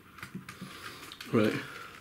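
Faint clicks and rubs of a small plastic Mini-Z monster truck being turned over in the hands, followed by a spoken "Right".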